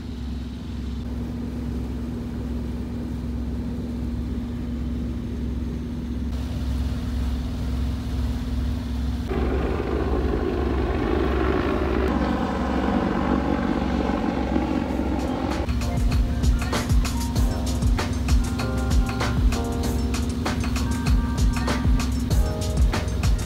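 A boat's auxiliary engine drones steadily under way. Background music fades in around the middle and takes on a regular beat from about two-thirds of the way through.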